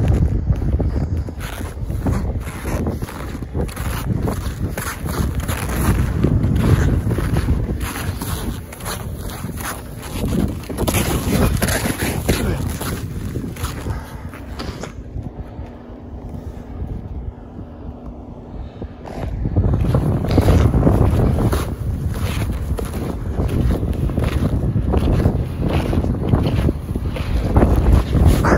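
Wind buffeting the phone's microphone in a loud, uneven rumble, with the crunch of snowshoe steps in deep snow. The rumble eases for a few seconds about halfway through.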